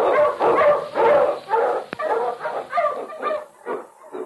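Dog barking rapidly, about three barks a second, trailing off near the end. It is the husky lead dog's barking in an old radio recording with a muffled, narrow sound.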